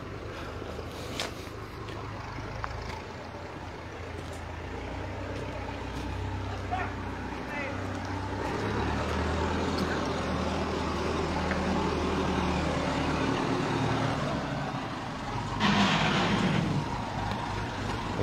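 Farm tractor engine running, a steady low drone that grows louder through the middle and then eases off. A voice is heard briefly near the end.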